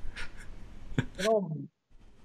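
A short pause in a man's talk over a video call: faint steady background hiss with a few short breathy sounds, a sharp click about a second in, then the man saying "you know".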